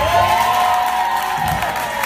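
Audience cheering and applauding, with several high held whoops rising in pitch, as a live band's song ends.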